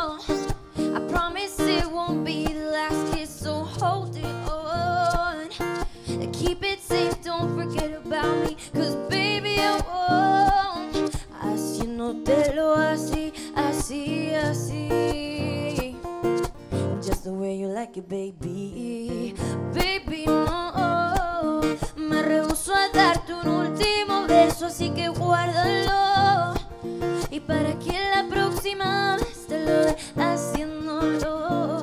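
Live acoustic music: a woman singing over strummed acoustic guitar and ukulele. The voice drops out briefly a little past halfway, then comes back in.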